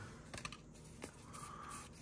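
Faint light ticks and clicks of Yu-Gi-Oh trading cards being flicked through and slid from hand to hand.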